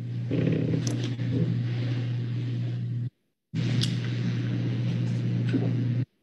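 An open microphone on a video call carrying a steady low hum with background noise and a couple of faint clicks, switched on and off abruptly by the call's noise gate, with a gap of about half a second around the middle.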